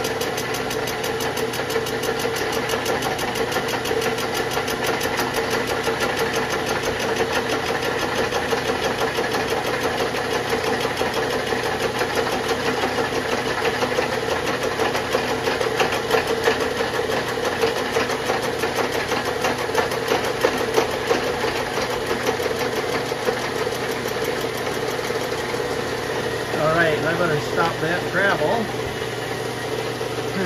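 Milling machine spindle turning a 14-inch PCD flycutter at about 600 RPM, taking a light facing cut across an aluminum Subaru engine block deck: a loud, steady machine drone with a fast regular texture, over the steady hum of the rotary phase converter that powers the mill.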